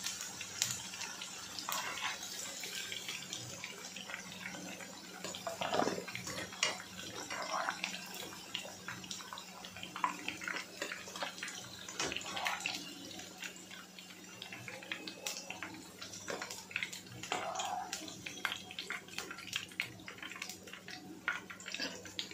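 Half-boiled baby potatoes deep-frying in hot oil: steady sizzling and bubbling, dotted with many sharp crackles and pops.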